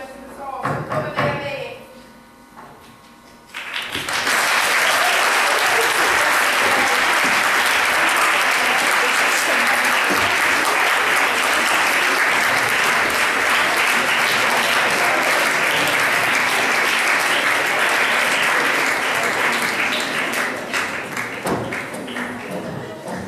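Theatre audience applauding: a brief spoken line, then clapping breaks out suddenly a few seconds in, holds steady and loud, and dies down near the end as the stage goes dark at the close of a scene.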